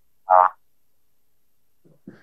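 A single short voiced sound from a person, a brief grunt or syllable lasting about a quarter second, a little way in; otherwise silence.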